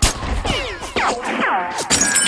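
Cartoon sound effect of a BB gun firing, a sharp crack, followed by several falling whistles as the BB ricochets. Background music plays under it.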